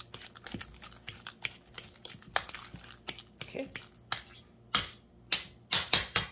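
Metal fork mashing ripe bananas in a bowl, its tines clicking and scraping against the bowl in quick, rapid strokes, then slower and louder taps in the last couple of seconds.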